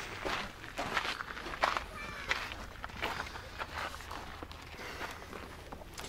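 Footsteps crunching along a volcanic cinder path at a walking pace, one short crunch every half second or so.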